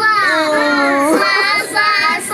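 A young child's high-pitched voice, wordless and sliding up and down in pitch, with one note held for about half a second in the middle.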